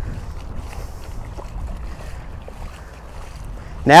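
Rubber boots and a dog's paws wading and splashing through shallow standing water, with wind noise on the microphone.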